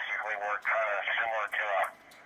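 A distant station's voice received on an amateur radio transceiver and heard through its loudspeaker: thin, telephone-like speech in two stretches, stopping just before the end.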